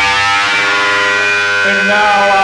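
Live punk rock band: the drums stop and a loud, steady, ringing guitar note is held. About a second and a half in, the singer starts a long wailing vocal note into the microphone.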